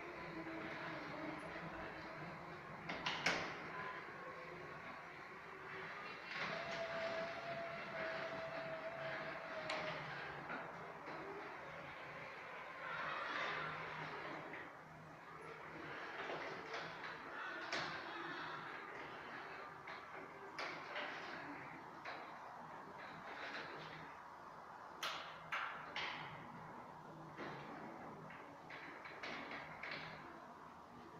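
Caterwil GTS3 tracked stair-climbing wheelchair running on its electric drive as it turns on the landing and goes down the stairs on its rubber tracks: a steady mechanical whir, with a held whine for a few seconds early on. Occasional sharp clicks and knocks come through, the loudest about three seconds in and near the end.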